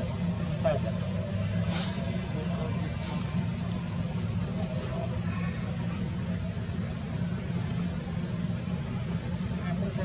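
A steady low rumble like an idling motor engine, with faint human voices over it.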